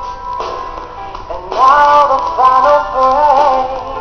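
A male singer sings a pop song live into a handheld microphone over backing music. After a quieter stretch, a loud phrase of held notes starts about one and a half seconds in.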